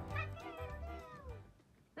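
A rooster crowing: one drawn-out call falling in pitch that fades out about a second and a half in, over background music with a steady low beat.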